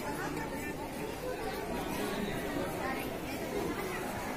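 Background chatter of many people talking at once, a steady babble of voices with no single voice standing out.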